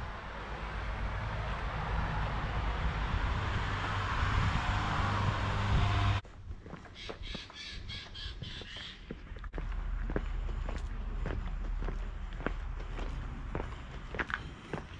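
A steady rushing noise that cuts off suddenly about six seconds in, then a bird calling several times in quick succession, followed by steady walking footsteps.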